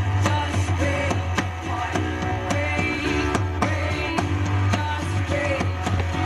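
Acoustic rock band playing live: strummed guitars, a steady percussion beat and a woman singing.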